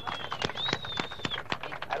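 Microphone handling noise: a run of irregular sharp clicks and knocks as the microphone changes hands, with a thin high whistling tone held for about a second near the start.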